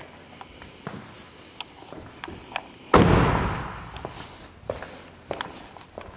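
A car door of a 2011 Nissan Murano CrossCabriolet shut with one loud slam about three seconds in, dying away over a second or more. Light clicks and handling noises come before and after it.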